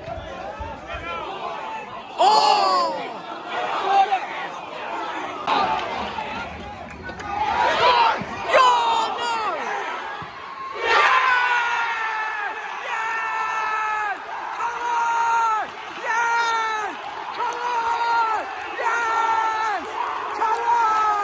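Football fans shouting as their team attacks, then breaking into celebratory cheering and yelling when a goal goes in about eleven seconds in. After that comes a string of loud separate yells, roughly one a second.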